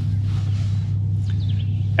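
Electric trolling motor running with a steady low hum that holds an even pitch.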